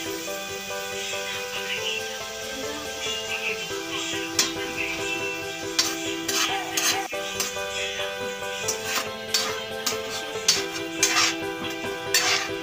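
Background music with held tones, and from about four seconds in a metal spoon scraping and clicking irregularly against a metal wok as chopped tomatoes are stirred.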